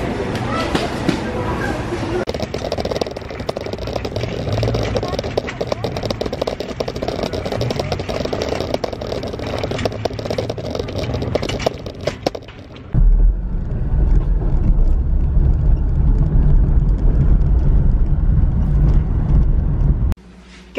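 A loaded metal shopping trolley rolling and rattling, with many small clicks. After an abrupt change about two-thirds of the way through, the steady low rumble of a car driving, heard from inside the cabin.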